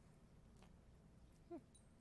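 Near silence: room tone, with one brief faint pitched sound about three-quarters of the way through.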